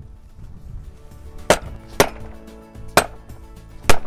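A hammer knocking on a wooden utility pole, four sharp strikes at uneven spacing with the last the loudest. The strikes give a bright tone, which the tester reads as the wood being in good condition.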